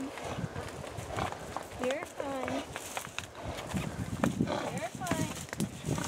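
Several saddle horses walking past in single file, their hooves clip-clopping irregularly on a dirt trail.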